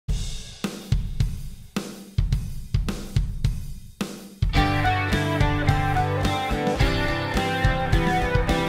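Song intro: a drum kit plays alone, kick, snare and hi-hat hits, for about four seconds, then guitar and bass come in over the beat.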